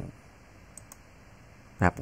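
A few faint clicks of a computer mouse, with a short word of speech near the end.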